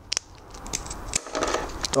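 Scissors cutting a strip of self-adhesive 3M Velcro: a sharp snip just after the start, then a run of small clicks and rustles from the blades and the strip.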